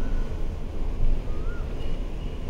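Wind buffeting an outdoor phone microphone: a low, uneven rumble, with a few faint, thin whistled notes over it.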